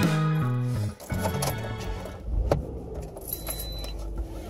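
Background music that cuts off about a second in, followed by the low rumble of a car idling, heard from inside the cabin, with a few sharp clicks.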